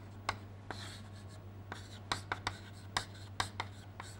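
Chalk writing on a chalkboard: a run of short, irregular taps and scratches as letters are written.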